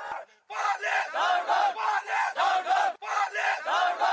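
A group of men chanting a protest slogan in unison, rhythmic shouts at about three a second, with a brief gap near the start and a short break about three seconds in.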